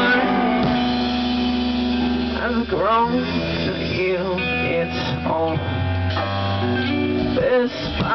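Indie rock band playing live: electric guitars and drums with a male voice singing over sustained chords.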